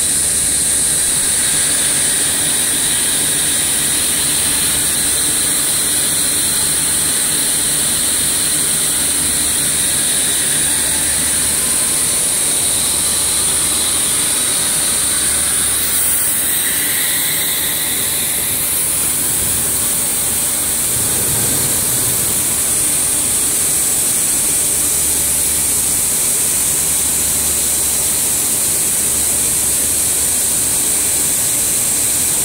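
Rubber hose production line machinery running: a steady loud hiss over a low hum that cuts in and out every few seconds.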